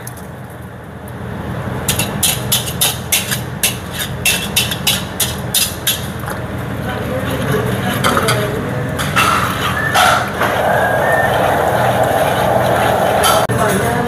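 A wire whisk clacking and scraping against the sides of a large aluminium wok in quick strokes, about four a second, while it works sliced mozzarella into a thick cream sauce; the strokes give way to softer, continuous stirring about halfway through. A steady low hum runs underneath.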